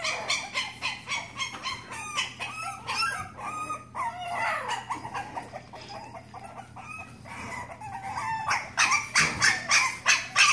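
Boston Terrier puppy whining and squeaking in a run of short, high cries that rise and fall in pitch, with louder, sharper yips near the end.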